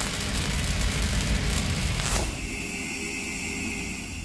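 A cinematic logo-intro sound effect: a rumbling, crackling wash of noise that slowly fades, with a whoosh sweeping down about two seconds in.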